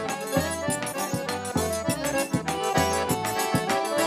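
Live northeastern Brazilian folk band playing an instrumental passage: a piano accordion carries the melody over a steady beat of low thumps from a large bass drum (zabumba).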